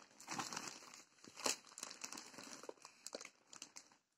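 Plastic wrapping of a pack of baby diaper pants crinkling faintly in irregular rustles and small crackles as it is handled and turned over.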